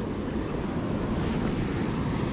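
Steady rush of water churning below a dam spillway, with wind buffeting the microphone.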